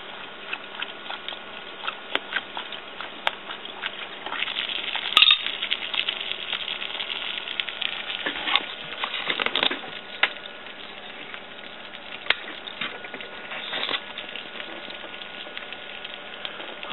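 Light metallic clinks and taps as a small homemade alcohol can stove and its metal pot and wire pot stand are handled, with the loudest clink about five seconds in and a cluster of clinks around the ninth second, over a steady low hiss.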